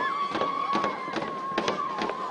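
Barrel drum beaten in a steady rhythm, about two to three strokes a second, for girls dancing in a circle. A high, held wavering tone runs over the beats.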